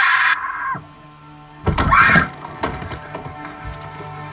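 A boy's high-pitched scream from a film soundtrack, rising at first and then held for under a second. A second loud cry follows about two seconds in, with quiet trailer music underneath.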